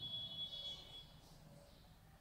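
Marker pen squeaking faintly on chart paper as a word is written: a thin, high squeak for about the first second, then only faint strokes.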